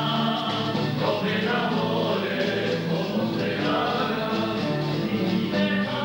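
A Spanish student tuna singing in chorus, several voices holding long notes together.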